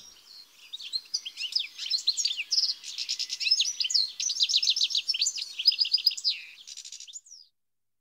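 European goldfinch singing: a lively, fast finch twitter of chattering notes and quick trills, which fades and stops near the end.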